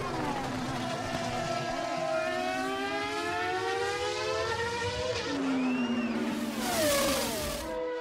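Several Formula 1 race cars' engines at high revs as they go past, their pitch gliding up and down with gear changes and passes. A louder rush of noise comes about seven seconds in as one passes close.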